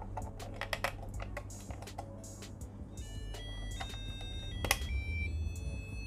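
AA batteries clicking into the spring contacts of a digital alarm clock's battery compartment. From about halfway, the clock gives a run of high electronic tones that step in pitch, its power-on sound once the batteries are in. Background music plays underneath.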